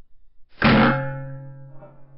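A single shot from an Evanix Rainstorm SL .22 PCP air rifle, a sudden loud report about half a second in. A metallic ringing of several tones follows and fades away over about a second.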